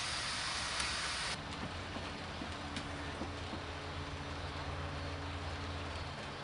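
Steady background noise with a low hum and a few faint ticks. The hiss drops suddenly about a second in.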